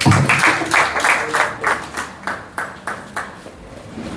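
Applause from a small audience: many people clapping at once, dense at first, then thinning to a few scattered claps that die out shortly before the end.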